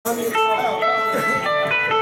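Live rock band playing mid-song: electric guitars ringing out held notes over a drum kit, cut in abruptly.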